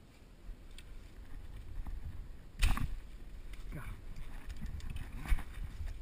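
Low rumbling handling noise from a body-worn action camera as someone moves through brush on a creek bank, with two sharp knocks, the louder about two and a half seconds in and the other about five seconds in.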